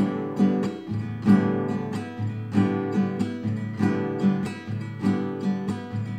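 Classical guitar strummed in the chacarera rasguido: fingers fanning down across the strings, thumb strokes down and up, and a palm-muted stroke, repeated at full speed in an even, quick rhythm of strokes.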